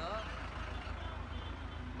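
A low, steady engine rumble from a nearby truck under faint crowd chatter, with a brief voice at the very start.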